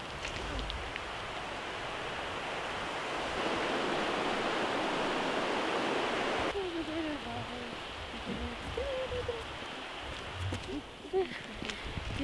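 Steady rush of running water, a little louder a few seconds in, that cuts off abruptly about halfway through. Faint distant voices follow.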